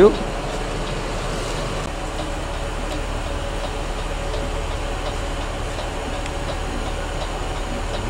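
Steady, unchanging hum inside a coach's driver cab while the bus stands with its engine idling and air conditioning running.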